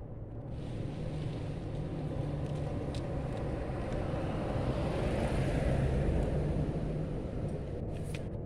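Car passing by: a low engine hum and road noise that swell to a peak about five to six seconds in, then ease off.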